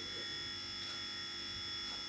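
A steady electrical buzz with a thin high whine held on several unchanging tones, the background hum of a small room.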